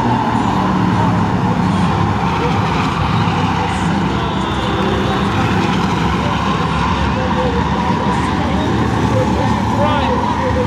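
A pack of stock cars racing on a short oval track, several engines running together in a steady, loud blend of engine and tyre noise.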